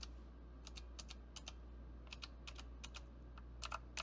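Outemu Blue clicky mechanical switches (Cherry MX Blue clones) on an EagleTec KG010 keyboard being pressed one key at a time. Each keystroke makes a sharp tactile click, about a dozen irregular clicks with a louder cluster near the end, over a faint steady low hum.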